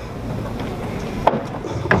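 Footsteps and shuffling on a wooden stage floor, with two sharper knocks in the second half.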